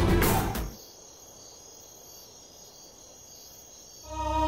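A dramatic music cue cuts off under a second in. It leaves faint, steady night-time cricket chirping, a thin unbroken high trill.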